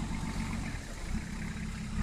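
Nissan Patrol 4x4's engine running at low revs as it crawls slowly over rocks.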